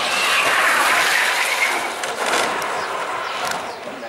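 Engineless speed-down gravity kart rolling past on asphalt: a steady rushing noise from its tyres, with no engine note. It swells in the first second and fades near the end as the kart goes by.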